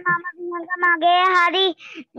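A child's high voice singing a short line, holding steady notes about a second in.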